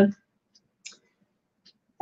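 A pause with near silence broken by three faint, short clicks, the first about half a second in, a slightly louder one just before the second mark, and a very faint one near the end.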